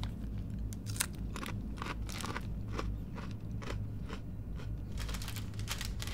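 Foil snack packet crinkling and crisps being crunched: many irregular sharp crackles over a low steady hum.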